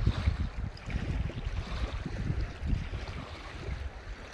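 Small waves lapping and splashing against the edge of a boat ramp, with wind buffeting the microphone in uneven low rumbles.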